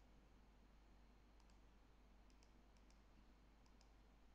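Faint computer mouse clicks against near silence: four quick pairs of clicks, each a button press and release, starting about a second and a half in.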